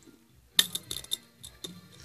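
Small plastic slime containers being handled, giving a quick run of light clicks and clinks over about a second.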